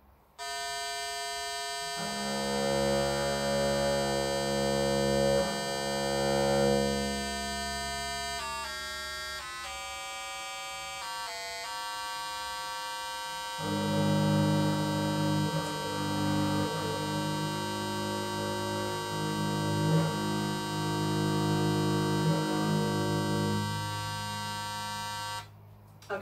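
A steady electronic reference drone from a phone starts and holds, while the open strings of a seven-string bass viol are bowed against it in two long stretches to tune them by ear. Between the bowed stretches a string's pitch steps down as its peg is turned. The drone cuts off just before the end.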